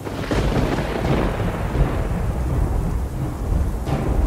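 Thunderstorm sound effect: a thunderclap about a quarter of a second in rolls off into a low rumble over steady rain, and a second crack comes near the end.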